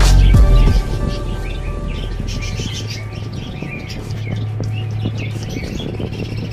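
Small birds chirping in many short high calls over background music, which drops sharply in level about a second in and carries on more quietly beneath the chirping.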